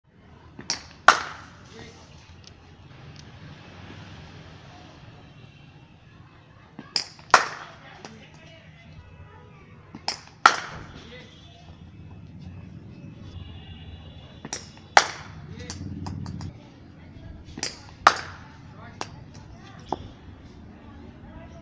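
Leather cricket ball bouncing on a concrete net pitch and then being struck by a willow bat, five deliveries in turn. Each is a pair of sharp knocks a little under half a second apart, the bat strike the louder.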